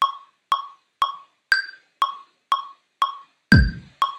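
Ableton Live's metronome clicking at 120 BPM, two even clicks a second, with a higher-pitched accent click on the first beat of each bar. A louder low thump comes near the end.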